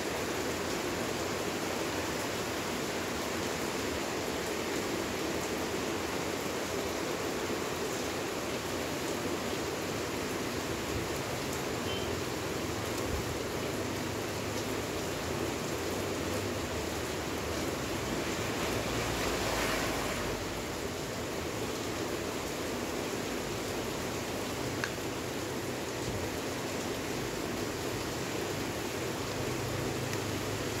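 Steady, even background hiss with no distinct events, swelling slightly for a moment about two-thirds of the way through.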